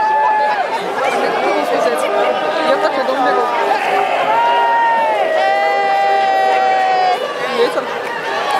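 A crowd of marchers talking and calling out over each other, many voices at once, with a few long drawn-out calls, the longest held for nearly two seconds in the second half.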